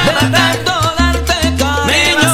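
Salsa band playing an up-tempo number: a bass line repeating in a steady pattern under percussion and wavering melodic lines.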